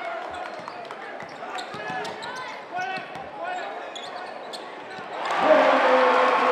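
Basketball bouncing on a hardwood gym floor amid scattered voices in a large echoing gym. About five seconds in, the crowd gets loud, cheering.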